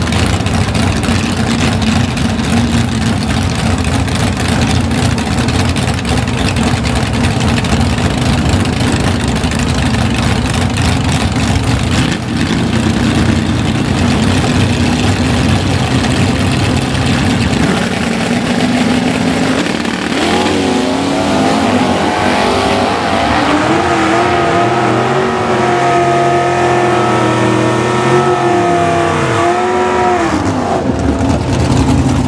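Drag-racing first-generation Chevrolet Camaro's engine running loudly at the starting line with a steady rumble, then launching a little past halfway: its pitch climbs, holds high with bends at the gear changes, and drops away near the end as the car runs down the track.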